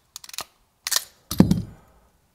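Hand crimping tool pressing spade connectors onto wire ends: a few light clicks, a sharp snap just before a second in, then a louder thunk about a second and a half in.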